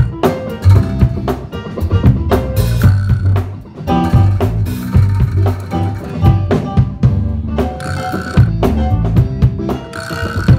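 Live band playing a blues jam: a drum kit keeps a steady beat with sharp snare hits over a strong bass line, with other instruments playing on top.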